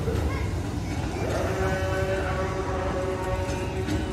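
A distant, drawn-out voice with held pitches that bend slightly, fading in the first second and back from about one and a half seconds in, over a steady low rumble.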